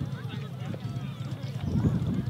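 Wind rumbling on the microphone, with a stronger gust about three-quarters of the way in, and faint distant voices.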